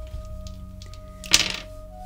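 Soft background music of steady held tones, with one sharp click a little past the middle.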